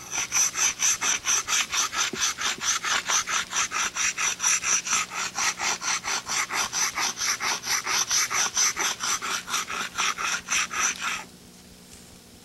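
A hand-held stone rubbed rapidly back and forth on a flat stone slab, grinding its edge. It makes an even run of gritty scraping strokes, about four a second, that stops suddenly near the end.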